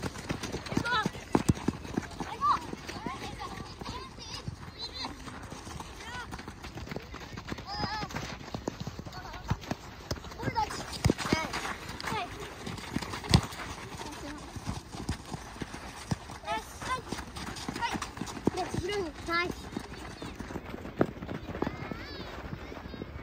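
Youth football on a dirt pitch: running footsteps crunching on the gravelly surface, sharp knocks of the ball being kicked, and short high-pitched calls and shouts from the children. The loudest knock comes a little past halfway.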